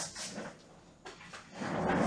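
Faint rustling and a few soft knocks as a person leans down from a chair to pick a tarot card up off the floor.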